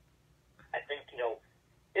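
A man speaking a few words over a telephone line, with his voice thin and cut off at the top, and the line quiet around them.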